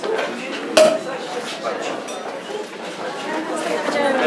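Indistinct chatter of a crowd of guests in a hall, with one sharp clink of cutlery or tableware a little under a second in.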